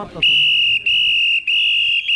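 A festival whistle blown in three long, steady, high-pitched blasts with short breaks between them, starting just after the beginning.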